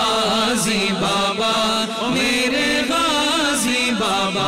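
A male naat reciter singing a long, melismatic, unaccompanied devotional line, his voice bending and gliding in pitch. A steady low vocal drone runs beneath it.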